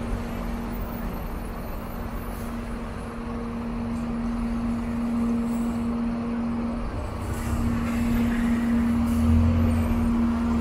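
Buses running at a terminal: a steady engine hum throughout, with a low rumble that grows louder near the end as an articulated trolleybus pulls up close.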